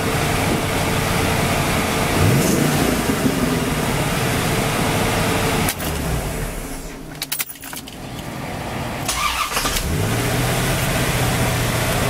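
1993 Chevrolet Corvette's LT1 V8 idling, switched off about six seconds in, then restarted with the key a few seconds later, catching and settling back into a steady idle. The owner suspects the starter has "a little bit of a thing going on" when it starts.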